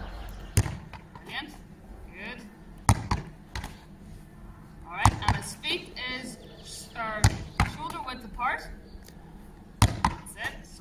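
A Gaelic football thudding against a concrete wall and floor about every two seconds as it is thrown, rebounds and is scooped up, some throws giving a second, softer knock.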